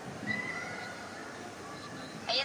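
Faint, high, drawn-out voice of the other caller coming from a phone's earpiece held to the ear, lasting about a second and a half.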